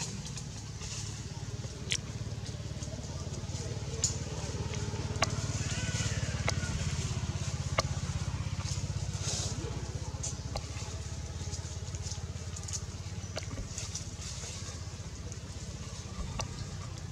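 A steady low engine-like hum, with a few sharp clicks scattered through it.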